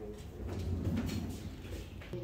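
Indoor shop ambience: a steady low hum with a few faint clicks and knocks.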